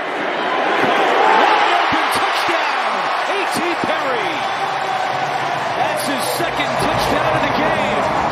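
Football stadium crowd cheering a touchdown, many voices yelling together; the cheer swells about a second in and stays loud.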